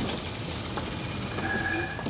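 Industrial sewing machines running together in a workroom, a dense, steady mechanical rattle. A short steady tone joins it about a second and a half in.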